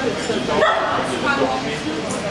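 Small dog yipping, over background voices.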